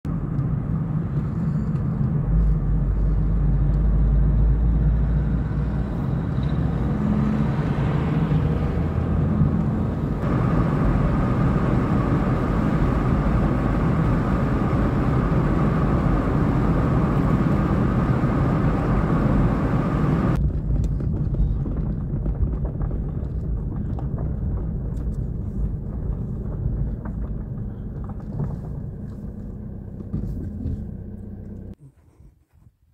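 Car interior road noise while driving: a steady low rumble of engine and tyres heard inside the cabin. Its character changes abruptly twice, about a third and two-thirds of the way through, and it grows gradually quieter towards the end.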